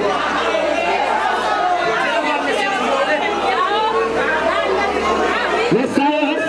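A crowd of people talking and calling out at once, many overlapping voices with no single voice leading.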